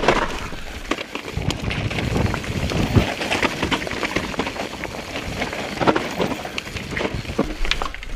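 Mountain bike riding fast down a dirt and gravel trail: tyre noise over loose stones and ground, with many short clicks and rattles from the bike, and wind rumbling on the microphone.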